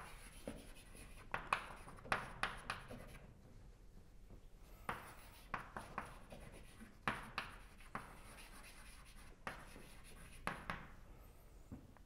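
Chalk writing on a blackboard: sharp taps and short scratching strokes in several bursts, with brief pauses between words.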